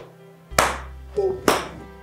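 Two loud, sharp hand claps about a second apart over background music of sustained tones, with a brief vocal sound between them.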